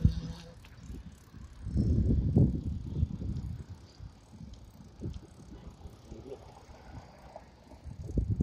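Riding a bicycle while filming on a handheld phone: irregular rumbling from wind and movement on the phone's microphone, loudest about two seconds in, then dropping to a lower rumble.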